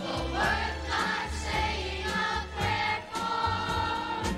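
A group of children singing a song together as a choir.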